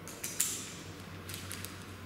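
Handling noise from a feeder rod being flexed and shaken by hand: two sharp clicks about a quarter and half a second in, then faint creaking and rustling.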